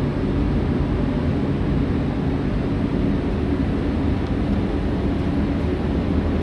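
Bersi B2000 air scrubber's fan running steadily: an even rush of moving air with a low hum underneath.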